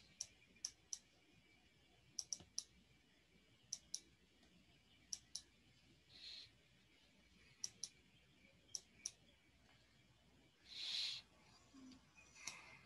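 Faint sharp clicks in quick twos and threes, one group every second or so, like clicking at a computer desk picked up by an open microphone. Two short soft hisses come about six seconds in and, louder, near the end.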